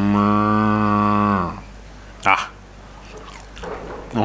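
A man's long, steady hummed "mmm" of enjoyment while eating barbecued beef. It holds one low pitch and fades out about a second and a half in. A single short click follows.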